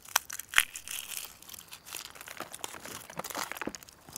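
Dry plant material crackling and crunching as it is handled, with two sharp snaps within the first second followed by a run of small crackles.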